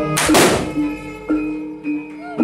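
A single loud, sharp crack from a long jaranan whip (pecut) swung on the stage, about a fifth of a second in, over jaranan gamelan music with repeating metallophone notes.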